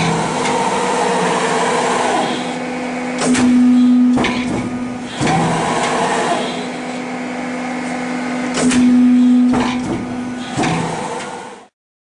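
Warcom Maxima 30-6 hydraulic guillotine shear running: a steady hum from its hydraulic power unit, with sharp clunks and louder spells of the hum repeating about every five seconds as the blade beam cycles.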